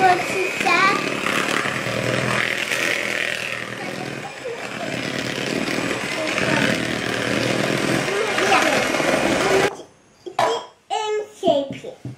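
Handheld electric mixer running steadily, its beaters whisking butter, sugar and eggs into cake batter, then switched off abruptly about ten seconds in. Voices, including a child's, talk over it and after it stops.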